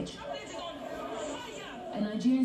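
Indistinct voices of several people talking over one another, no words clear.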